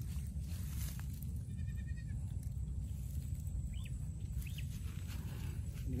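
Steady low rumble of outdoor wind on the microphone, with a short faint wavering call about a second and a half in and two brief high chirps later on.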